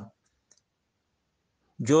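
A man lecturing in Fula stops at the start, leaving about a second and a half of dead silence broken only by one faint click about half a second in, then starts speaking again near the end.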